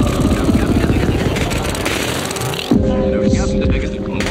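Electronic sound-collage music with a dense, throbbing hum texture. About two and a half seconds in it cuts abruptly to a layer of steady held tones, with many quick clicks over it.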